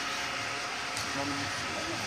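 Steady hiss with a low hum inside a stationary vehicle's cabin, typical of the engine idling with the air-conditioning fan running.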